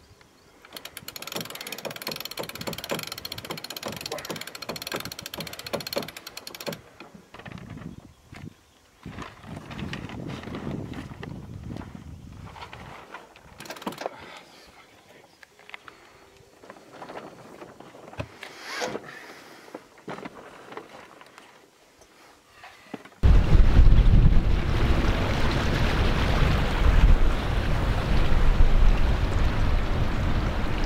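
Sailboat deck winch ratcheting in rapid clicks while the sail is hoisted, followed by scattered knocks. About three-quarters of the way through comes a sudden switch to loud wind on the microphone, with the boat under sail.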